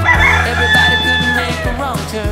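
A rooster crowing once, one long held note that bends down at the end, over background music with a steady bass.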